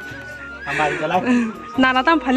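A man talking in short phrases, with background music under the voice.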